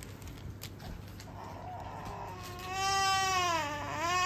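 Infant crying: a faint fretful sound about halfway in, then one long wail through the second half that drops in pitch at its end.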